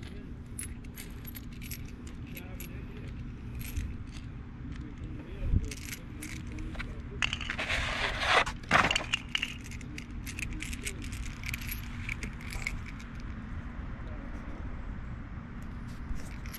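Loose steel mower-handle bolts clinking and jingling against each other as they are picked up and handled, many small scattered clicks. A louder rustle comes about halfway through.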